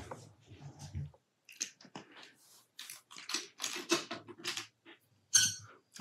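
Faint, intermittent clicks and scuffs of painting tools being handled, as a brush pen is put down and another brush taken up.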